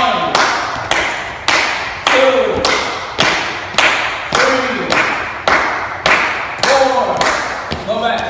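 Dancers jumping in unison and landing on a hard tiled floor: a steady run of thuds, about two a second, each echoing in the large hall. A voice is faintly heard underneath.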